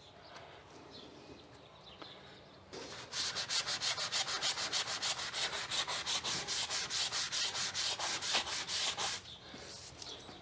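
Quick back-and-forth hand rubbing on a wooden door jamb, about six strokes a second, starting about three seconds in and stopping about a second before the end: paint loosened by tape being rubbed off the bare wood.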